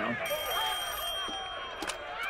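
A rotary telephone's bell rings, starting about a quarter second in, its higher tones fading after about a second while the lowest carries on. Under it, the soundtrack of a movie playing on the television.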